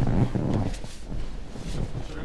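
Rumbling handling noise from clothing rubbing on a body-worn camera's microphone as the wearer walks, loudest in the first half second, with a few faint footsteps or taps on a wooden floor after it.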